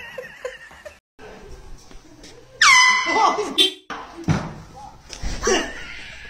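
A short, very loud air horn blast goes off a little over two seconds in, setting off startled voices and laughter.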